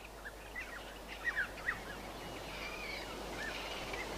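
Small birds chirping faintly over a quiet outdoor background hiss: short chirps that rise and fall in pitch, scattered through the first two seconds, with a thinner drawn-out call in the second half.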